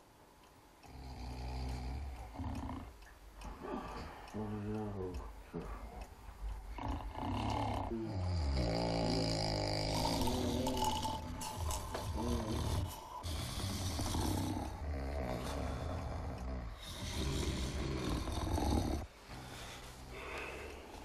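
Men snoring in deep sleep: long, low snores that come one after another every two to three seconds.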